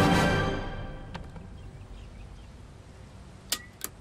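Film soundtrack: a sustained swell of music fades out over the first second, leaving quiet background. Near the end come two short, sharp clicks about a third of a second apart.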